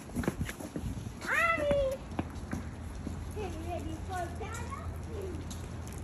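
Footsteps thud on wooden bridge boards in the first second. About a second in, a child's voice calls out loudly in a high, falling tone, then speaks more faintly over a low outdoor rumble.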